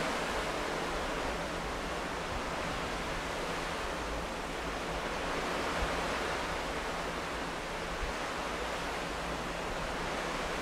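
Steady rushing of water churned up by a moving ferry's wake, with some wind over the open deck.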